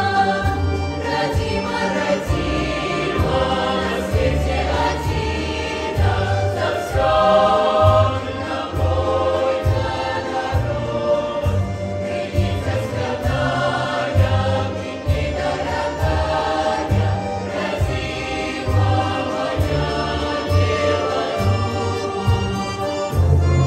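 Mixed folk choir of women's and men's voices singing a Belarusian song over instrumental accompaniment with a steady, pulsing beat in the bass.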